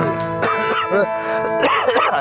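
Acoustic guitar being played, with a chord strummed and left ringing steadily and a person's voice over it.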